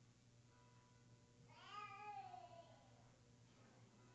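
One short, high, meow-like cry that rises and then falls in pitch, lasting about a second, in an otherwise near-silent room.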